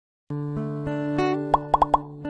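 Logo intro jingle: music starts about a third of a second in with held pitched notes, then four quick pops that each sweep up in pitch come in the last half second, louder than the music.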